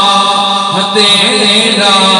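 A man's voice reciting a naat (Urdu devotional poem) in a melodic, chanting style into a microphone, with long held notes. There is a short break about a second in.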